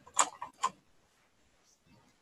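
Three quick, sharp clicks at the computer within the first second, the first the loudest, as the design software is worked.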